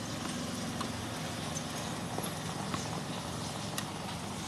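A ball being struck by rackets and bouncing, a handful of sharp knocks spread irregularly over a few seconds, over a steady low hum.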